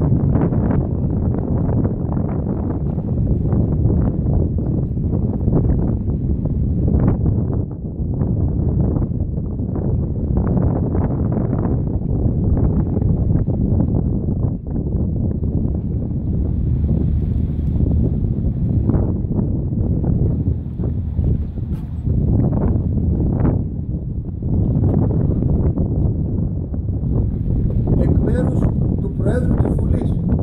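Wind buffeting the microphone: a loud, irregular rumble that keeps rising and dipping.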